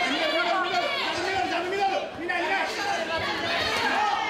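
Several men shouting over one another in a large hall, the raised voices of ringside cornermen and spectators calling out during a kickboxing exchange.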